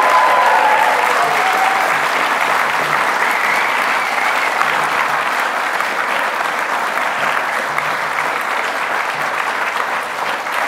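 Audience applauding steadily in an auditorium, with a few whoops in the first few seconds.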